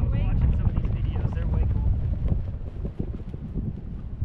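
Wind buffeting the microphone of a camera riding on a parasail in flight: a loud, low, rumbling rush that eases off after about two and a half seconds.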